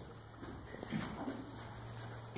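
A faint, steady low hum in a man's voice, with a soft murmur about a second in.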